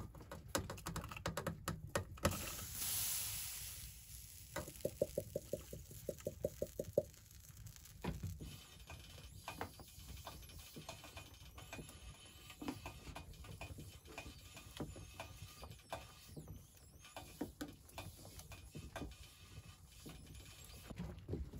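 Cookware and food being handled on a wood stove: light metal clinks and knocks from a camping mug and billy can, a brief hiss a couple of seconds in, then a quick run of even clicks, about six a second, and scattered soft taps as bread is laid on the stove top.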